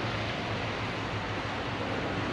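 Steady rushing wind noise on a handheld camera's microphone, with a low steady hum underneath.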